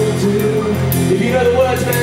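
Rock band playing live and amplified: electric guitar, bass and drums, with cymbals struck about four times a second.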